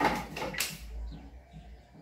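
Hand-pump garden pressure sprayer giving two short hissing sprays in the first second.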